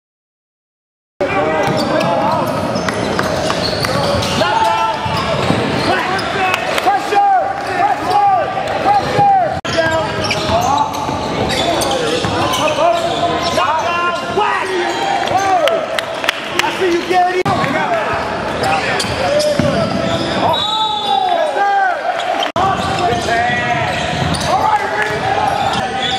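Silent for about the first second, then the sound of a basketball game in a gym: the ball bouncing on the hardwood, sneakers squeaking, and players and spectators calling out, echoing in the large hall.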